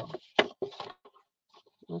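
Small craft scissors snipping through cardstock: one sharp snip about half a second in, then a few fainter crunchy cuts.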